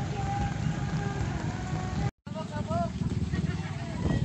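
Voices and music mixed with motorcycles passing on a wet road. The sound cuts out for an instant about halfway through.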